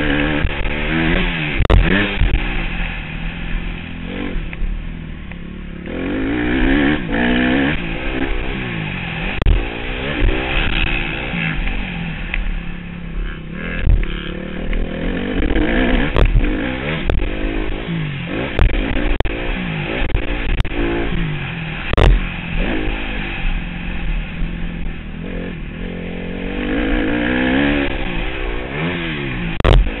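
Motocross bike engine heard close from the riding bike, revving hard and dropping back over and over as the rider works the throttle and gears, with many sharp knocks as the bike hits the rough track.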